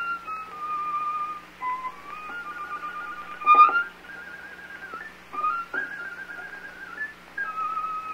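Solo violin playing a high melodic line in short held notes, with a few sharp accented strokes, from an old recording with a steady low hum under it.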